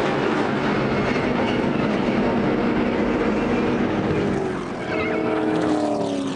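Stock car V8 engines running at speed, a steady dense drone, with one engine note falling in pitch near the end.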